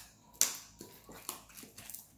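Plastic bottle picked up and handled, crinkling and clicking in a few sharp snaps, the loudest about half a second in.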